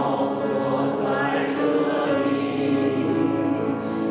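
A small mixed group of men and women singing a Mandarin hymn together, in sustained phrases.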